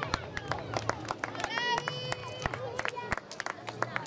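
Scattered hand clapping from a small outdoor crowd, with a few voices calling out over it.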